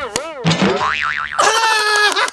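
A cartoon-style comedy sound effect: a wobbling, swooping boing that bends up and down in pitch, settling about a second and a half in into a steady held tone.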